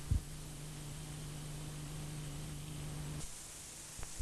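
Steady low electrical hum with faint hiss from the blank end of a videotape recording, after the programme sound has cut off. A short low thump comes just after the start, and the hum stops a little after three seconds in, leaving hiss.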